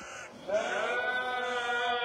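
A muezzin's voice singing the dawn call to prayer (fajr adhan): after a short breath-pause, about half a second in, he starts one long drawn-out melismatic note that slides slightly in pitch and is still held at the end.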